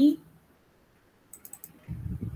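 A few quick computer mouse clicks, about four in under half a second, followed near the end by a low dull thud.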